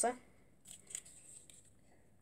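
A few faint, brief rustles and clicks of items being handled: a glass jar put aside and a hand going into the box.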